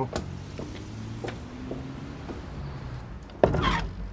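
A wooden front door with a glass panel being shut, a single sharp bang about three and a half seconds in, over a low steady hum.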